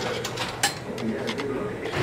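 A returned coin being taken from a vending machine's coin return cup: a brief metallic click about two thirds of a second in, among light handling noise.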